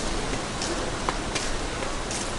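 Steady, even hissing outdoor background noise with a few faint, light ticks.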